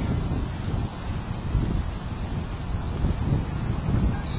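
Wind buffeting the camera's microphone: an uneven, gusting low rumble.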